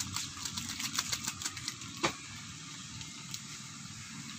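Crow bathing in a shallow puddle: a quick run of small splashes and drips in the first half, then one sharper splash about two seconds in. A faint steady low rumble runs underneath.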